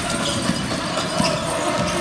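Gymnasium crowd noise during a basketball game, with a basketball being dribbled on the hardwood court in a few short knocks.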